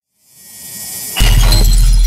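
Editing sound effect on a title card: a swelling swish, then a sudden loud hit about a second in, followed by a deep low boom that rings on and slowly fades.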